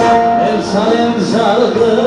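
Live amplified music: a man sings into a microphone over instrumental backing. His voice starts about half a second in with a wavering, gliding melody over the held instrumental notes.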